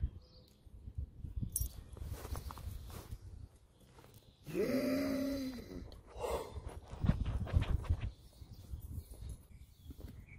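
A dog gives one drawn-out whine, about a second long and rising then falling in pitch, about halfway through, with a short higher yip a moment later. Around it comes the scratching and rustling of a dog digging at a fabric dog bed.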